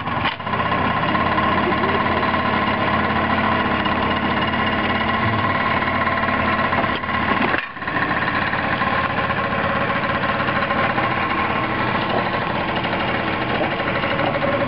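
Peugeot Vivacity scooter's small two-stroke engine running steadily at idle, with a brief drop in sound about seven and a half seconds in.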